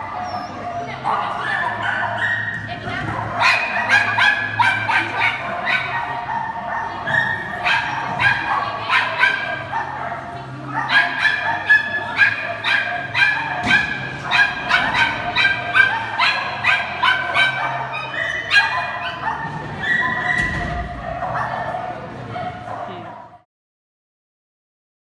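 A dog barking over and over in short, sharp yaps, several a second at its busiest, with brief pauses between runs of barks. The sound cuts off suddenly near the end.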